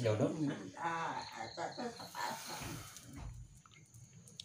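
Low talking in the first half, with a faint steady high-pitched chirping of crickets in the background that carries through the quieter second half.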